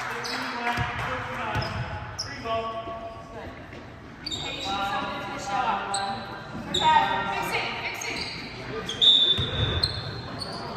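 Basketball game in a gym: a ball bouncing on the hardwood court, short high sneaker squeaks, and indistinct calls from players and spectators, echoing in the large hall.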